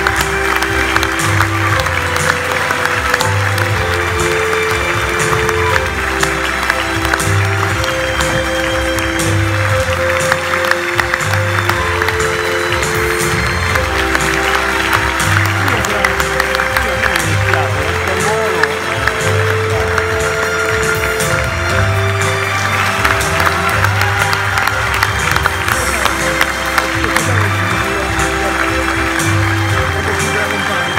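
Music with sustained notes and a repeating bass line plays over steady audience applause.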